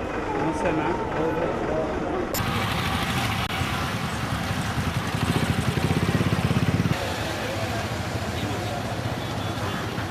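People's voices for the first two seconds, then a bus engine running with street noise, its low rhythmic throb swelling loudest between about five and seven seconds in.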